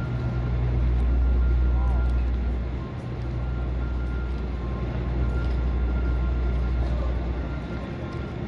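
City street ambience: a steady low rumble that dips briefly about three seconds in, with voices of passers-by and a faint steady high whine.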